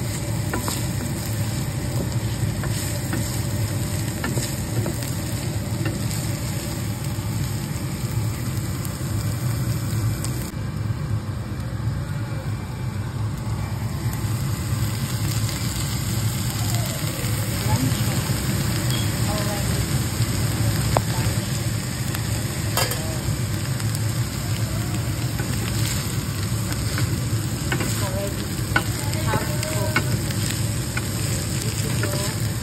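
Ground beef with onions and red peppers sizzling in a white frying pan as it is stirred with a wooden spatula, with light scraping and clicks of the spatula on the pan. Diced potatoes and carrots are tipped into the pan about halfway through.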